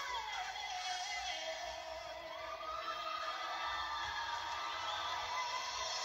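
A female singer holds long sustained notes at the close of a ballad over backing music, stepping up in pitch about halfway through, while an audience cheers.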